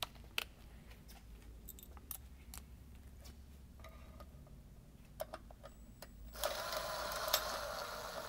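A few light clicks of a small bolt and steel bracket being handled, then about six seconds in a cordless drill/driver starts whirring steadily, running a mounting-bracket bolt into the intake manifold.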